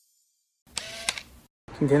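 Silence, then about two-thirds of a second in a short rustle with two sharp clicks, under a second long: handling noise of a hand-held phone as the selfie recording begins. A man starts speaking Mandarin near the end.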